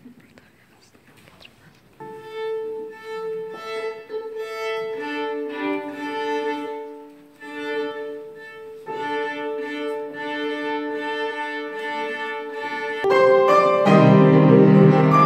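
Violin being tuned: the A string is bowed as a long held note, then paired with the E and then the D string in sustained double-stopped fifths. About a second before the end, a loud piano chord comes in.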